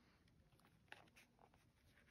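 Near silence, with faint sounds of a coated-canvas and leather card-case wallet being handled and turned in the hands, including a light tick about a second in.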